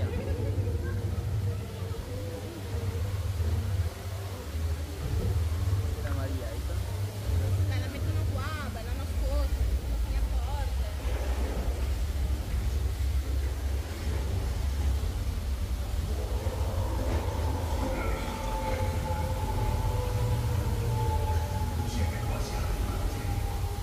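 Boat dark ride soundscape: a steady deep rumble, with faint voices in the middle and a held tone from the ride's sound effects that comes in near the end.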